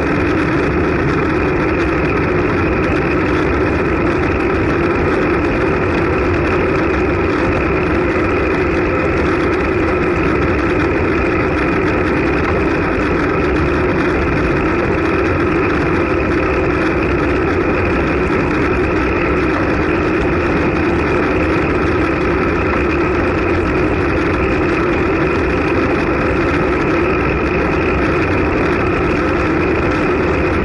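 Steady wind and road rumble from a road bike rolling at about 35 km/h in a group, picked up by a bike-mounted action camera's microphone, with an even hum and no breaks.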